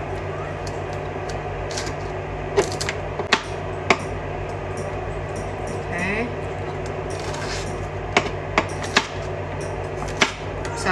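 Kitchen knife chopping bell pepper on a cutting board: scattered sharp knocks of the blade striking the board, about six in the first four seconds and three more close together near the end, over a steady low hum.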